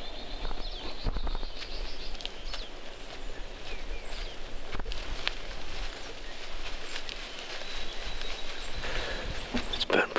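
Outdoor field-edge ambience: a steady rustling hiss with a low wind rumble on the microphone, broken by scattered faint clicks and rustles.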